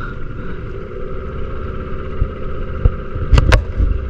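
A small boat's outboard motor runs steadily while the boat is under way. Wind rumbles on the microphone, and there are two sharp knocks a fraction of a second apart about three and a half seconds in.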